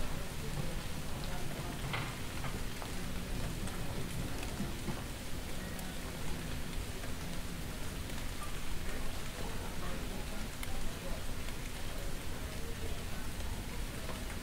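Steady rain falling on a street, an even hiss with a few faint drip-like clicks, over a low steady hum.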